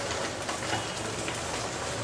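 Thick ground masala paste of coconut, chilli and spices frying in a nonstick wok over a high gas flame while a wooden spatula stirs it: a steady crackling hiss.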